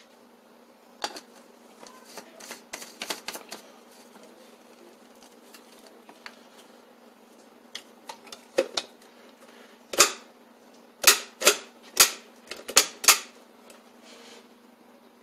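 Plastic clicks and knocks from a Farberware personal blender being put together: the blade base fitted onto the filled cup, then the cup set and locked onto the motor base. A few soft clicks come early, and a quicker run of sharp, louder clicks comes in the last few seconds; the motor is not yet running.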